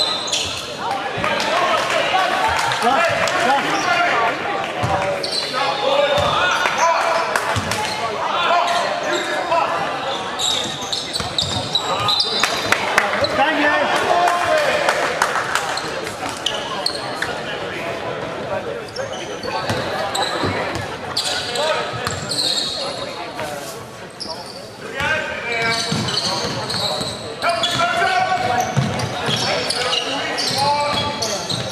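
A basketball bouncing on a hardwood gym floor during live play, amid indistinct shouting and chatter from players and spectators.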